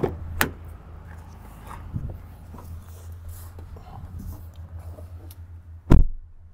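A car's rear door is opened with a latch click, followed by rustling and shuffling as someone climbs onto the back seat. The door is then slammed shut with a loud thud near the end. A steady low hum from the running car lies underneath.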